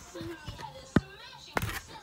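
Faint talk broken by two sharp knocks, one about halfway through and another, slightly longer, near the end, as the toys and a plastic toy sword are handled.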